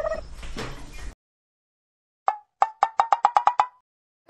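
A run of about ten sharp, lightly ringing taps, starting singly and quickening to about ten a second, after a moment of dead silence. The tail of a girl's voice is heard at the very start.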